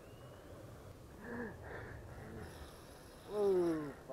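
A man's drawn-out groan, falling in pitch and the loudest sound, near the end, after a shorter grunt about a second in, made while straining against a hooked fish on a spinning rod.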